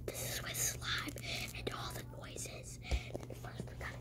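A person whispering close to the microphone in short breathy phrases.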